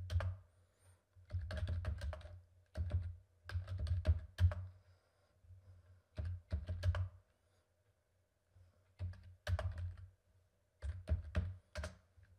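Computer keyboard typing: short bursts of rapid keystrokes separated by pauses, with a longer break about two thirds of the way through, as a command line is entered.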